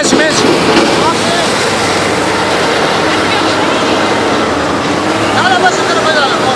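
Heavy earthmoving machinery running: the diesel engines of a dump truck and a Caterpillar loader make a dense, steady noise. Men's voices call out over it near the start and again near the end.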